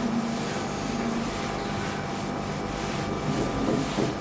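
Steady room hum and hiss, with the soft rubbing of a duster wiping writing off a whiteboard.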